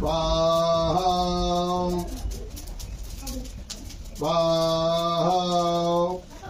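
Conch shell (shankh) blown in two long blasts, each about two seconds, the first at the start and the second about four seconds in. Each blast holds a low horn-like note with a breathy hiss and steps up slightly in pitch partway through.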